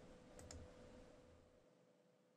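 Near silence broken by two faint clicks in quick succession about half a second in, like a computer mouse double-click, over a faint steady hum.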